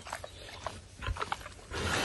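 Domestic pig rooting and eating with its snout in straw bedding: scattered short smacking clicks, then a louder breathy rush of noise near the end.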